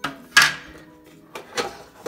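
Plastic parts of a Philips air fryer's basket and drawer knocking together as they are handled, with a sharp clack about half a second in and lighter knocks around a second and a half.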